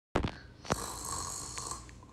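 A person making a snoring sound: one long noisy drawn breath of about a second, after a few sharp clicks of handling at the start.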